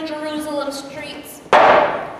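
A single hard hammer blow about one and a half seconds in, loud and sharp with a short ringing decay in the hall: the staged nailing to the cross. Before it, a voice fades away.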